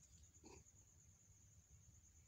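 Near silence with a faint steady high whine. About half a second in, a nursing kitten gives one brief, soft grunt.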